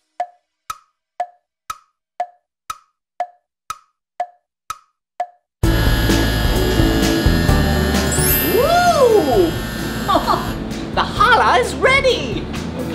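Clock tick-tock sound effect: short wooden ticks, two a second, alternating high and low, for about five and a half seconds. Loud music then cuts in abruptly, with a tone that rises and falls near its middle.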